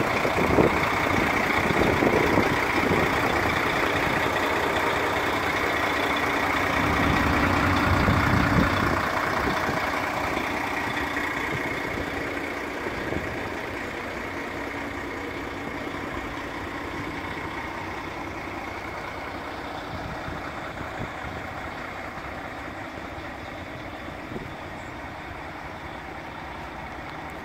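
A DAF tanker truck's diesel engine running steadily at idle, louder in the first ten seconds and then growing gradually fainter.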